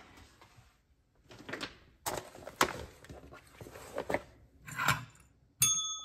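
Paper cards and a plastic envelope being handled on a tabletop: scattered light clicks and rustles. Near the end, one ring of a desk call bell.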